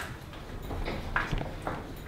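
A sharp knock, then a faint, steady wash of noise: kombucha spilling out of a dispenser jar whose tap lever has been pressed by mistake, running over the cupboard.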